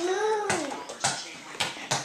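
Small rubber toy basketball bouncing on a hardwood floor after a shot, about four bounces, the last ones coming quicker. A voice calls out with a drawn-out vowel at the start.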